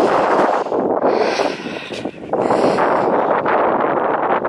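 Wind buffeting the microphone: a loud, steady rush with a brief lull about two seconds in.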